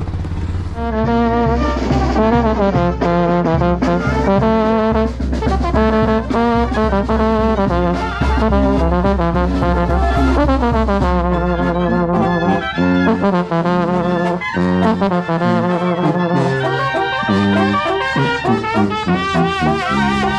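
A brass band playing a tune as it walks: trombones, sousaphone and clarinet over a bass drum with cymbal, starting about a second in, with a trombone loud and close. A steady low rumble runs under the music until about twelve seconds in.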